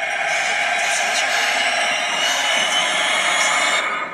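A woman wailing in anguish, one unbroken cry that cuts off suddenly just before the end, from a TV drama's soundtrack.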